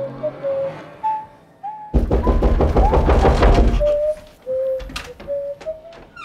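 A flute playing a slow, wavering melody of single notes. About two seconds in, a loud burst of rapid knocking lasting nearly two seconds drowns it out, and one more knock comes near the end.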